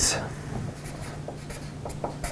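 Felt-tip Sharpie marker writing capital letters on paper: a series of short, faint scratching strokes.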